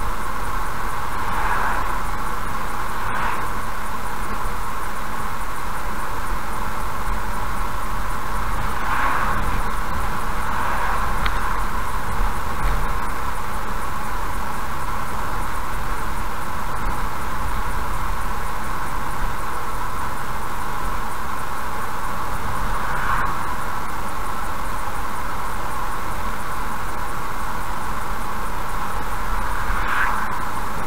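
Steady road and engine noise of a car driving at about 75 km/h on a highway, heard from inside the car. A few brief swells rise and fade as oncoming vehicles pass.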